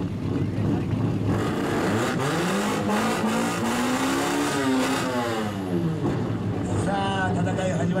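A loud exhaust on a modified Shōwa-era Japanese car being revved for an exhaust-sound contest: one long rev whose pitch climbs for about three seconds and then drops back.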